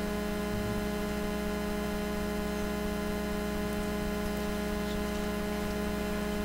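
Steady electrical hum with several unchanging tones over a faint hiss, from the chamber's microphone and sound system with no one speaking.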